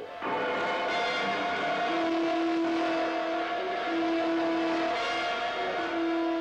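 Film-trailer sound effect: a steady rushing roar with held tones over it. One tone cuts in and out from about two seconds in. It accompanies the miniaturised craft's journey through the body.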